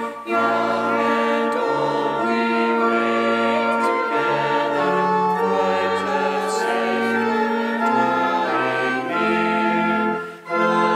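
Voices singing a verse of an Advent hymn to organ accompaniment, with held organ chords and bass notes beneath the melody and a short break between lines just after the start.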